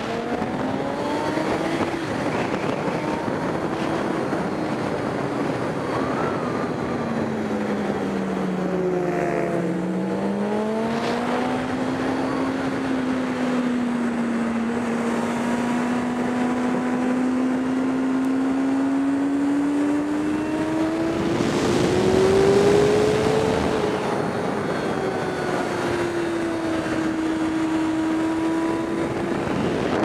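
Sportbike engine heard onboard, pulling up in pitch at the start, dropping back about a third of the way in, then climbing steadily to its highest and loudest point about three-quarters of the way through, with a rush of noise there, before easing a little.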